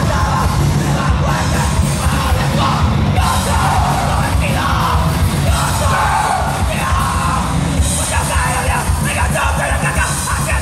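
Hardcore punk band playing live, with loud guitars and drums and shouted vocals, heard from amid the audience in a large hall.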